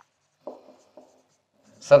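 Marker pen writing on a whiteboard: two faint short strokes, about half a second and a second in.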